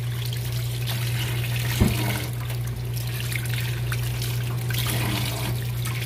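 Tap water running over tomatoes in a bowl in a sink as they are rinsed by hand, over a steady low hum. A single knock sounds just under two seconds in.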